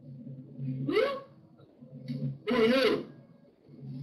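Two short, high-pitched vocal calls: one about a second in that rises in pitch, and a longer one near three seconds in with a wavering pitch. A low, steady hum lies under both.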